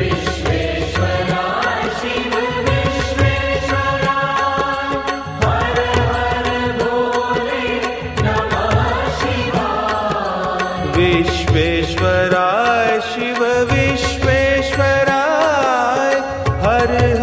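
Indian devotional chant-song: a voice singing a melody over long held accompanying tones and a steady low drumbeat.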